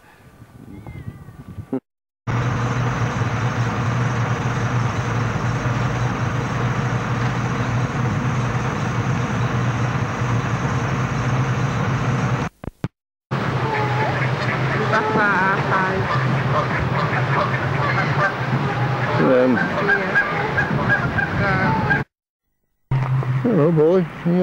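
Ducks and geese calling over a steady hiss: a run of repeated short calls from about halfway through, with lower calls near the end. The sound drops out briefly at a few points.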